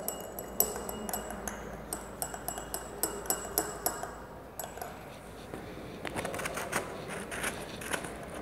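A stirrer clinking and tapping irregularly against the wall of a small glass beaker as cold-setting mounting powder and liquid are mixed into a paste that is starting to set, with a short pause about halfway.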